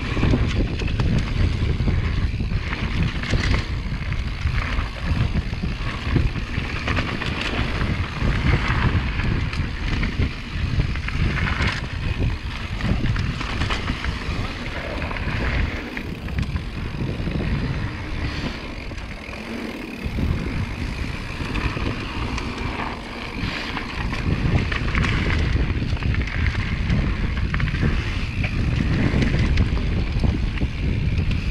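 Mountain bike descending a dry dirt singletrack, heard through a helmet-mounted camera: wind buffeting the microphone as a heavy rumble, with tyre noise on dirt and short knocks and rattles from the bike over rough ground. The rumble eases briefly about two-thirds of the way through.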